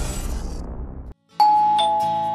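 The low rumble of a logo sting dies away and cuts off, then after a brief silence a two-note ding-dong chime sounds, a doorbell, the second note lower than the first and both ringing on.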